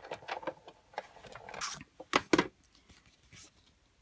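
Sizzix Big Shot die-cutting machine being hand-cranked to emboss a butterfly die-cut, the platform and embossing folder passing through its rollers with irregular clicks and creaks. A few loud knocks a little after two seconds in, then quieter.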